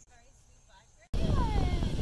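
A quiet stretch with faint voices, then about a second in a sudden switch to loud wind buffeting the microphone, with a young child whining over it.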